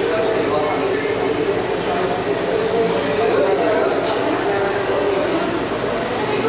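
Indistinct chatter of many people in a busy coffee shop, a steady murmur of overlapping voices with no single clear speaker.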